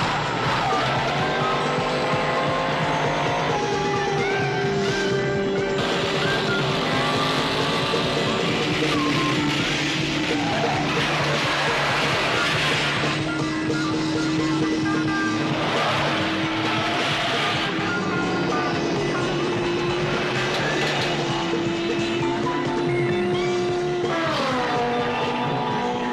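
Film soundtrack of race cars: engines revving and passing, with pitches that swoop down several times and loud surges of engine noise, under a music score.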